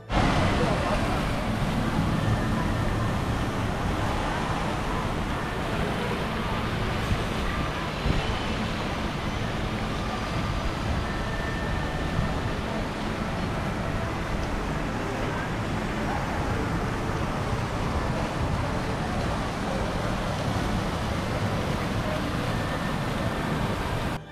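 Steady outdoor ambience of a busy plaza: a continuous rush of splashing fountain water under the murmur of many people's voices, with a low rumble.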